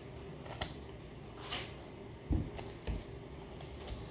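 Quiet handling of a stack of flipbook paper by hand: a couple of light rustles, then two dull thumps a little after two seconds and near three seconds.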